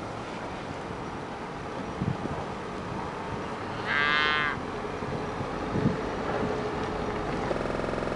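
A Hereford cow moos once, a short call of about half a second, roughly four seconds in, over steady background noise.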